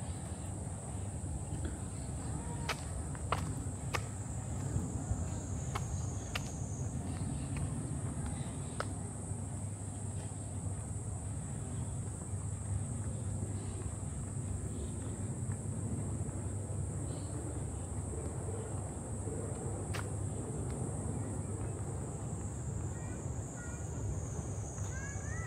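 Summer park ambience: a steady low rumble under a continuous high-pitched buzz of cicadas in the trees, with a few scattered sharp clicks.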